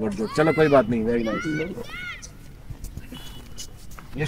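Children's voices: boys talking at the start, then quieter scattered chatter.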